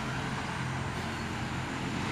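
Steady low background hum with an even wash of noise, unchanging throughout.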